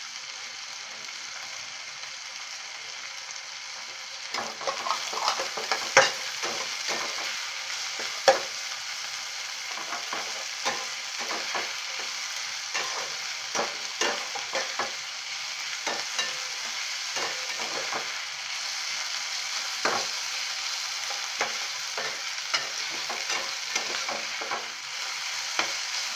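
Chopped onion and tomato sizzling in oil in a pan, with a steel spatula stirring and scraping through them. From about four seconds in the spatula knocks against the pan again and again, the sharpest knocks near six and eight seconds.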